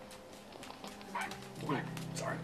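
An animal's two short cries, each falling in pitch, with a held music chord coming in underneath about a second in.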